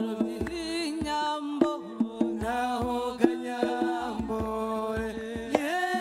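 A voice singing long, sliding notes over drum hits that fall at uneven intervals, roughly one or two a second.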